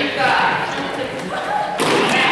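Voices of players calling out in a large sports hall, with one sharp thump near the end.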